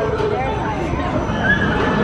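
Riders on a swinging pendulum ride screaming and whooping, several voices at once with rising and falling pitches, over a steady low rumble.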